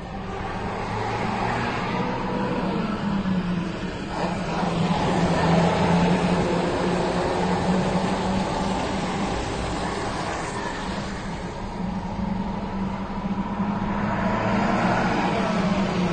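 Heavy trucks towing flatbed trailers passing on a wet road: a steady low engine drone with tyre and road noise, heard from inside a car. The sound swells about five seconds in and again near the end as trucks go by.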